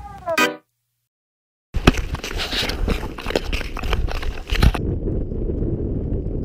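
The tail of an electronic music track with held tones that slide downward and stop about half a second in, then a second of dead silence. Outdoor sound then cuts in: wind rumbling on the microphone with a run of sharp knocks and crunches for about three seconds, leaving only the steady wind rumble near the end.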